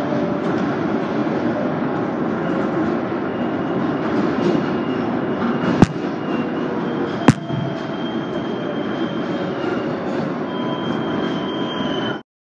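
Inside an R188 subway car running on elevated track: a steady rumble of wheels and running gear, with a faint high squeal that grows stronger near the end. Two sharp clicks, about a second and a half apart, come midway and are the loudest sounds.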